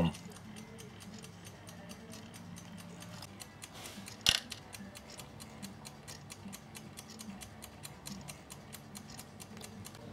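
Steady fast mechanical ticking, about five ticks a second, over a faint low hum, with one sharper click about four seconds in.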